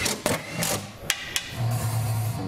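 Hand-tool work on a test car: about five sharp knocks and clicks spread over two seconds, then a steady low hum near the end.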